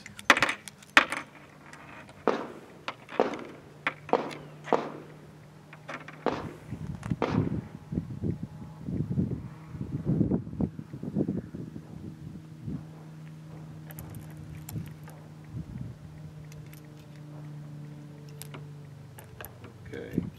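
A revolver being unloaded and reloaded by hand: brass cases and cartridges clink and click against metal and the table, a quick series of sharp clicks over the first eight seconds or so. A steady low hum then runs underneath from about eight seconds in.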